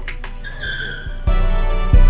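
Background music with a tyre-screech sound effect about half a second in, lasting roughly half a second. The music then gets louder with a heavy bass beat from just past a second in.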